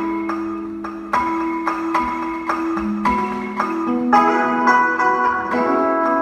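Live band playing an instrumental passage: a steady run of sharp repeated notes, about three a second, over held low tones.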